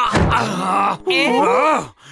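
A cartoon thud of a body hitting the floor, followed by a man's voice groaning in pain in two stretches, the second near the end.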